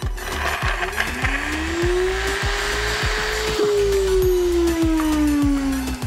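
NutriBullet Rx blender motor running at speed while grinding freeze-dried steak into powder, with a gritty hiss from the dry meat in the jar. The motor's pitch rises over the first few seconds, then slowly sinks toward the end. Background music with a steady beat plays under it.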